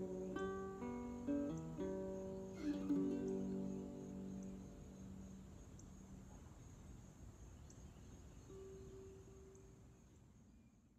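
Small-bodied acoustic string instrument picked to close a song: a short run of single notes and a final chord in the first three seconds, then left to ring and slowly die away, with one more soft note near the end.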